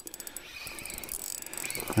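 Small spinning reel being cranked, its gears whirring with fast fine clicking, as a hooked fish is reeled up through the ice hole.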